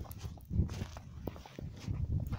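Footsteps on snow-covered ground: a few dull footfalls with faint scuffs between them.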